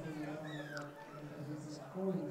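Distant voices calling out on a football pitch, with a brief high rising-and-falling cry about half a second in.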